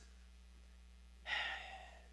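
A man's short audible sigh, a single breath picked up by a lectern microphone about halfway through, fading out over half a second against a faint steady hum.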